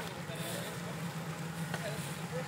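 A 4x4's engine running steadily at low revs as it wades into a deep water hole, heard from the bank, with faint voices in the background.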